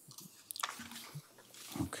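Faint room sounds through the meeting microphones: a sharp click about half a second in and a few brief low murmurs, then a man's voice starting near the end.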